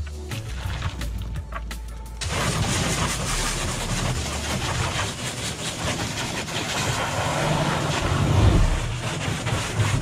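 Water spraying hard from a garden-hose trigger nozzle onto a plastic kayak hull, a loud steady hiss that starts suddenly about two seconds in, under background music.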